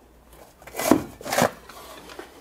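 Two short scraping knocks, about half a second apart, as a grill heat protector is pulled out of a wooden cabinet.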